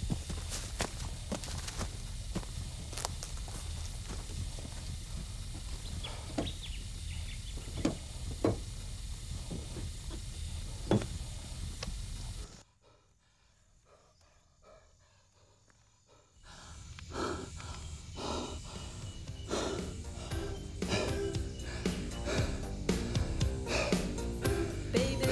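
Footsteps on dry bush ground, a run of separate knocks over a steady low outdoor rumble, for about the first half. About halfway the sound cuts suddenly to near silence for a few seconds, then music comes in and grows louder toward the end.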